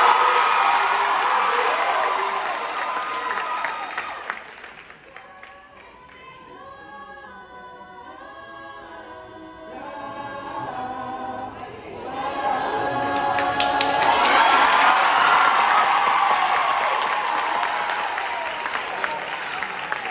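A women's group singing a cappella in harmony, the held chords clearest in a quieter stretch in the middle. The audience cheers loudly at the start and again from about thirteen seconds in, with sharp claps or stomps.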